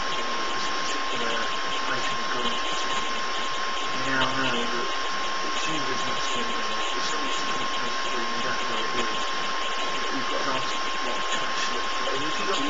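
Steady hiss with a constant thin high whine: the recording's own noise floor. A faint murmur comes about four seconds in.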